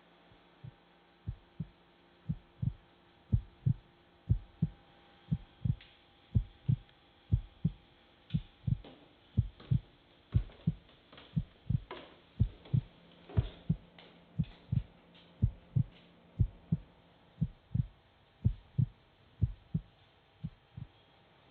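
Heartbeat sound effect: a steady low lub-dub double thump about once a second, starting about a second in, over a faint steady hum. Lighter clicks and taps come through in the middle.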